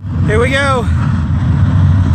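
A pack of dirt-track race car engines running together with a steady low rumble. A voice cuts in briefly about half a second in.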